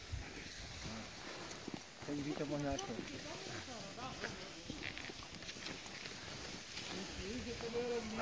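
Faint voices of people talking a little way off, over light swishing and clicks of cross-country skis and poles moving on snow.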